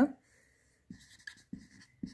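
Marker pen writing on a white board: a few faint, short scratching strokes, starting about a second in.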